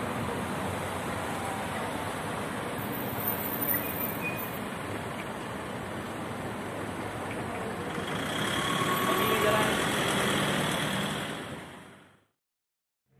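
Steady road-traffic noise, swelling louder as a vehicle passes about eight seconds in, then fading out at the end.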